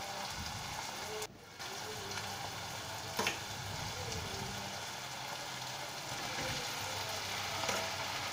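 Spinach and fenugreek leaves frying in hot oil with tomato masala in a kadhai, a steady sizzle as the greens go in. There is one light knock about three seconds in.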